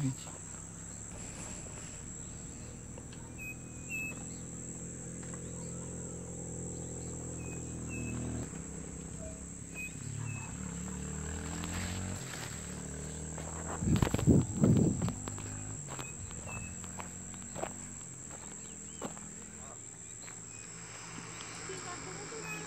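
Insects shrilling in grass: a steady high-pitched drone throughout, over a low hum, with a short loud rumble about two-thirds of the way in.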